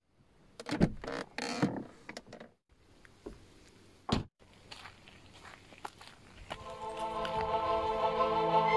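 A car door unlatches with a click about a second in, followed by rustling as someone climbs out, then the door shuts with a single sharp thunk about four seconds in. From about six and a half seconds, orchestral music with strings fades in and grows louder.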